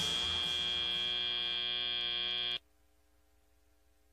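FIRST Robotics Competition field's end-of-match buzzer: one steady, harsh electronic tone that cuts off sharply about two and a half seconds in, signalling that the match is over.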